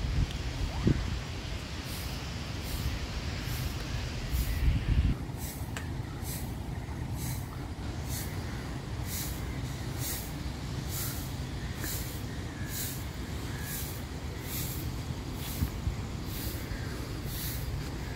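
Outdoor ambience with a steady low rumble of wind on the microphone. From about five seconds in, short high hissy pulses repeat about twice a second.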